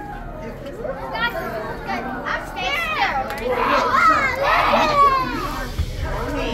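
Excited children's voices, high-pitched calls and squeals, over the chatter of a crowd; the voices are loudest and busiest in the middle.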